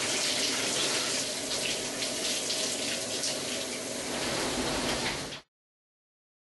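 Water running steadily from a shower, an even rushing hiss that cuts off suddenly about five and a half seconds in.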